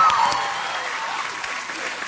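Studio audience applause and clapping, dying down gradually.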